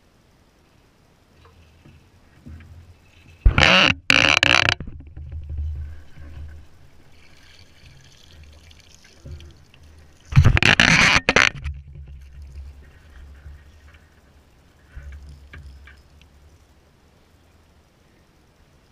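Water splashing loudly twice, briefly each time, about three and a half and ten seconds in: a hooked bass thrashing at the surface and being scooped with a landing net.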